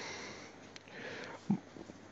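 A person drawing a breath in through the nose, heard as a faint hiss about a second in, followed by a short low throat sound.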